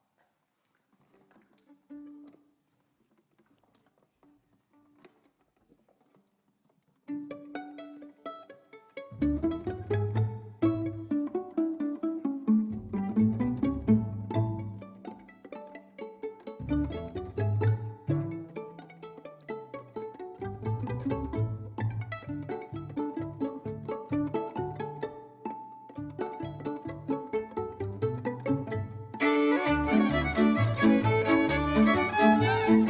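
Folk string band of violins and double bass starting a tune: a few faint single notes, then a lone violin enters about seven seconds in, and the double bass and more violins join about two seconds later with a steady rhythmic bass line. The playing grows louder and fuller near the end.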